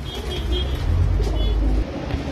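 Pigeons in a loft with faint cooing, over a heavy low rumble that grows louder midway and cuts off just before the end.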